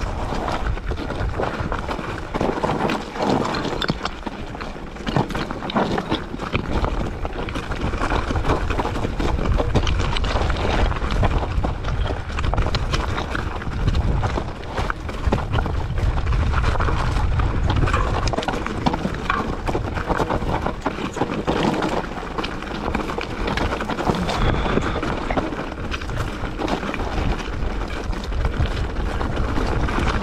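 Mountain bike rolling down a loose rocky trail: a steady clatter of many small irregular knocks as the tyres go over stones and the bike rattles, over a constant low rumble.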